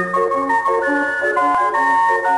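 Circus-style organ music: a bright melody of held notes over a bass that alternates between two low notes in a steady oom-pah beat.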